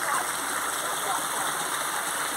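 Running water from a stream or spring flowing steadily, a continuous even rushing.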